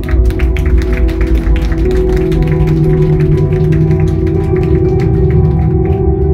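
Instrumental rock band playing live and loud: electric guitar and bass hold sustained notes over a heavy low end, with rapid, evenly spaced percussive hits that thin out near the end.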